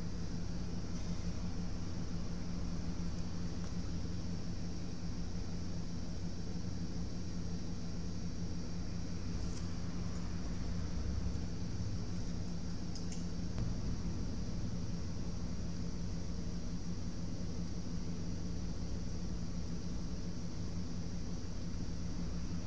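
Steady low electrical hum with a high hiss from workbench equipment, with a couple of faint ticks midway.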